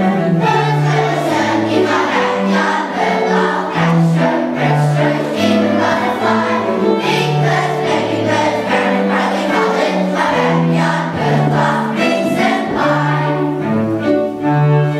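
Children's choir singing a song with a small string ensemble accompanying: violin above a stepping low bowed-string bass line.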